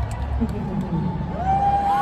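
Live concert sound in a large arena between songs: the band's heavy bass fades away under crowd noise and nearby voices. About one and a half seconds in, a voice slides up into a long held note.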